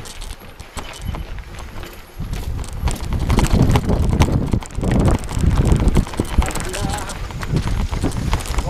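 Mountain bike riding fast over a stony gravel track: tyres crunching and the bike rattling in quick, irregular knocks over a low rumble, much louder from about two seconds in.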